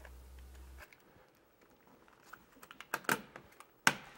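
Plastic HAI Omni thermostat body being pressed onto its wall base plate: a few light clicks and taps, then a sharp snap just before the end as it seats.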